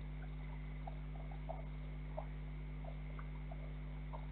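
Steady low electrical hum with short, faint chirps from small night animals scattered through it, several a second, two of them a little louder about one and a half and two seconds in.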